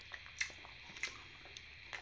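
A person chewing a mouthful of curry, faint soft mouth clicks now and then.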